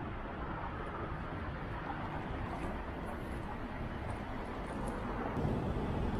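Steady outdoor city noise: the rumble of road traffic on a multi-lane street, even throughout with no distinct events.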